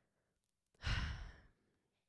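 A woman's single weary sigh into a close microphone, a breath of under a second starting a little under a second in, with a puff of air on the mic. It is an exasperated sigh, followed by "I'm so tired."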